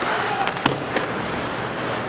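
Steady hockey-arena crowd noise, with a sharp click of a stick striking the puck about two-thirds of a second in.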